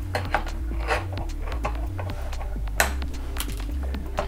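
Sharp clicks and snaps of nylon zip ties being pulled and clipped with side cutters, the loudest snap a little before three seconds in, over background music with a steady bass line.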